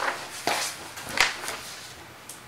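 Sheets of paper being handled and turned over on a table, with three short rustles and taps in the first second and a half before it settles to a quiet room.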